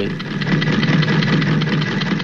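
A sewing machine running at speed: a rapid, even mechanical clatter over a steady low hum.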